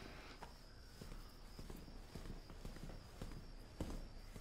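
Faint footsteps on a hard floor: a run of short, uneven steps, with one louder knock near the end.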